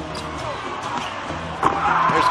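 Basketball dribbled on a hardwood arena court, repeated bounces over the hall's crowd noise, with a sharper, louder sound about one and a half seconds in.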